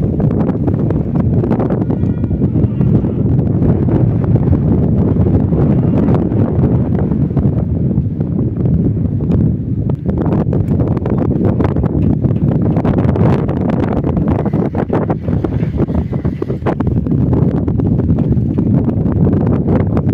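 Wind buffeting the microphone: a steady, loud low rumble that gusts up and down.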